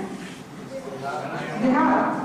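A woman's voice through a microphone: a quieter stretch, then a drawn-out vowel sound near the end.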